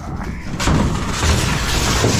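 A large white appliance being pushed across a steel trailer bed: a long scraping rush of sheet metal sliding on metal, starting about half a second in, over low thumps and rumble.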